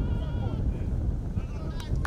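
A drawn-out shout from a spectator at a football match, held and wavering for about half a second, with wind buffeting the microphone. Shorter calls and a couple of sharp clicks come near the end.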